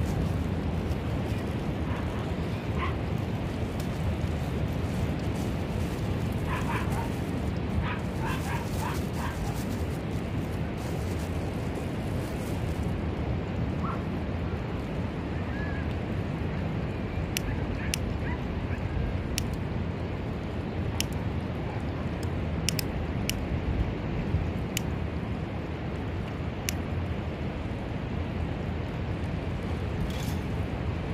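Steady low rumble of wind and surf. In the second half comes a run of sharp clicks while tinder is lit in a small stainless steel fire box.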